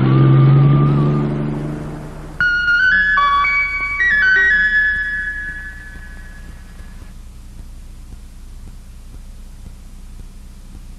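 A cartoon car engine sound effect, a low steady drone that fades away as the car drives off. About two and a half seconds in, a short closing musical sting of flute-like notes comes in suddenly and rings out, leaving only a faint steady hum.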